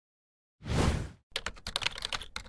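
Logo-animation sound effects: a single loud, short hit about half a second in, then a quick run of keyboard-typing clicks as the tagline text is typed out.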